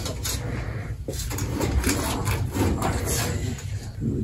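Light clicks and rubbing as a tape measure is worked against an evaporator coil and its sheet metal, over a steady low hum.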